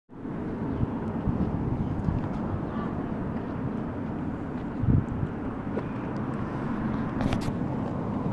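Steady low outdoor rumble of background noise, with a brief thump about five seconds in.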